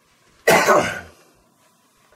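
A man coughing once into his hand: a single short cough about half a second in.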